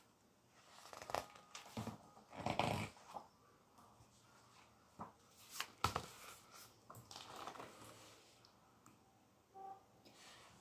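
Faint handling noise of a hardback picture book: scattered paper rustles and a few sharp taps as it is lifted and its pages are turned.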